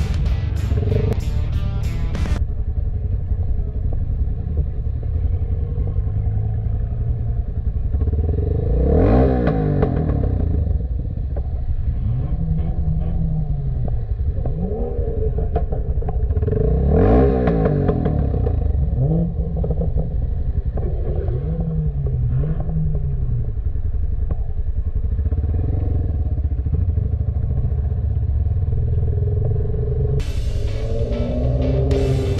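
Motorcycle engine running at low speed in stop-and-go traffic, its pitch rising and falling as the throttle is opened and closed, most strongly about nine and seventeen seconds in. Music plays over the first two seconds.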